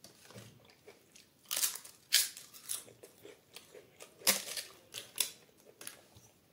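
Crisp papad crunching, five sharp loud crunches in two clusters a couple of seconds apart, with quieter mouth and chewing sounds between them.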